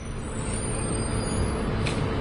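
Steady low rumble of city street traffic, with a short hiss near the end.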